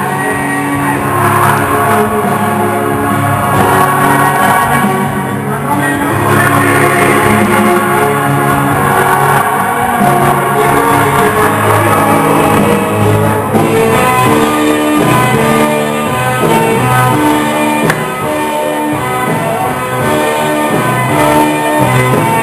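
Loud rock-style music with guitar, sounding through a large hall.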